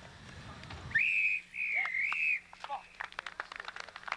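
Referee's whistle on a rugby pitch: two high blasts about a second in, a short one and then a longer one that dips in pitch midway, stopping play.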